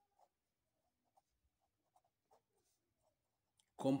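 Faint scratching of a pen writing on paper, in short separate strokes.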